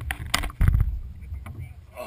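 Handling noise on a GoPro camera as hands grab it out of a fishing net: a few sharp clicks, then a loud low thump and rubbing a little over half a second in.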